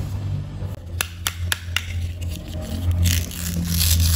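Hard plastic toy food pieces clicking against each other as they are handled: four quick clicks in a row. About three seconds in, a rough tearing crackle begins as the joined halves of a toy chili pepper are worked apart. A steady low hum runs underneath.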